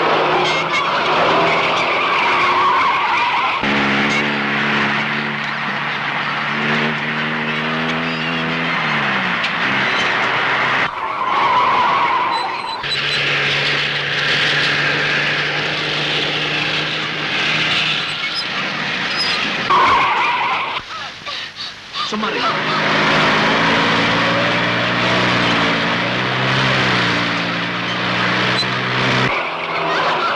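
Car-chase sound of car engines running hard and tyres skidding on a dirt road, with sustained engine notes that now and then bend in pitch, and short tyre squeals. The sound drops briefly a little past two-thirds of the way through.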